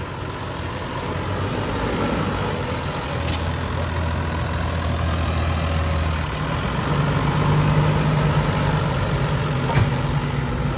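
A New Holland tractor's diesel engine running as the tractor drives past pulling a silage wagon. About six to seven seconds in, the engine note rises as it pulls away, and a thin high whine sounds above it from about halfway through.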